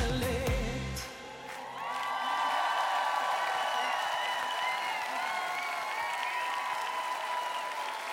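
A live pop band finishes about a second in, then a woman's voice holds a long final sung note with a slight waver, with audience applause underneath.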